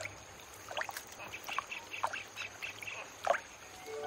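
Shallow stream water splashing and sloshing in short irregular bursts as a macaque wades through it, with the loudest splash a little after three seconds in. A faint steady high tone runs underneath.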